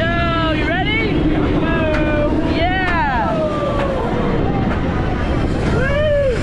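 Roller coaster riders yelling and screaming in long, gliding calls as a flying coaster train runs, over a steady low rush of wind and train rumble.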